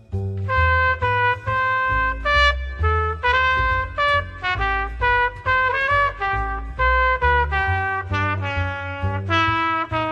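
Trumpet playing a jazz melody line of separate, articulated notes, the phrase starting about half a second in after a short breath. Plucked upright double bass notes run underneath, changing about every half second.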